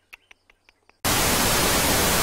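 Loud, steady burst of static hiss, like a television between channels, cutting in suddenly about a second in. Before it there are a few faint, short chirps or ticks.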